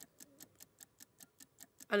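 Fast, steady, quiet ticking of a countdown clock sound effect, about six ticks a second.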